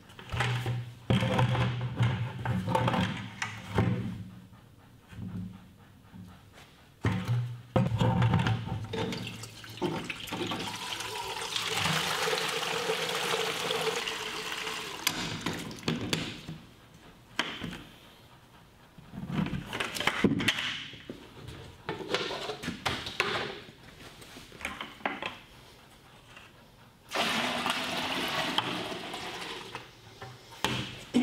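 Raw milk rushing out of a stainless steel bulk milk tank's outlet valve into six-gallon plastic buckets, in two steady stretches, one about a third of the way in and one near the end, with knocks and scrapes of the plastic buckets being handled between them.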